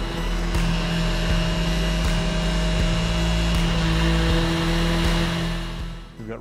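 Mirka random-orbit sander running steadily on a walnut and clear epoxy panel, smoothing freshly patched resin. It fades out near the end.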